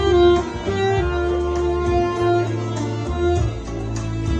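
Instrumental music: a saxophone playing a slow melody of long held notes over a backing track with a bass line.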